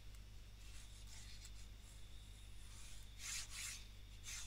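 Faint scratchy rubbing of a stylus or pen on a drawing tablet as handwritten working is erased: a light pass about a second in and a stronger one near the end. A steady low electrical hum runs underneath.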